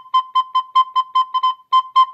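Soprano recorder playing one note, C, as a quick run of short tongued notes, about five a second, all at the same pitch.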